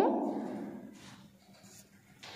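The very end of a woman's drawn-out, rising "No", fading over about a second into faint room tone.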